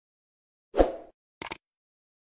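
Sound effects of an animated subscribe button: a short soft pop about three-quarters of a second in, then a quick double mouse click about a second and a half in.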